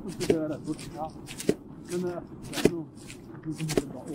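Footsteps crunching in packed snow at a steady walking pace, several crisp crunches a second apart, with low voices talking faintly underneath.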